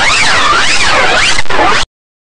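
Heavily effect-distorted production-logo audio: a loud, noisy hiss whose pitch sweeps up and down about twice a second, cutting off abruptly into silence near the end.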